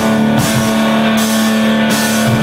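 Live rock band playing loud: electric guitars ring out a long held chord over drums and cymbals.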